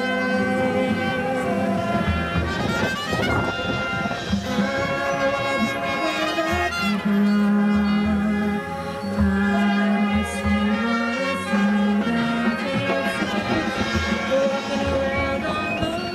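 High school marching band with front-ensemble percussion playing sustained chords, with repeated low drum hits underneath from about six seconds in.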